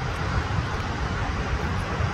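Ocean surf breaking on a sandy beach: a steady rushing roar of waves with a heavy low rumble.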